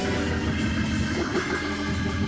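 Church organ playing sustained chords under the pause in the preaching.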